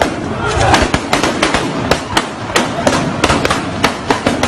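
Gunshots in a rapid, irregular string, several a second, with people shouting.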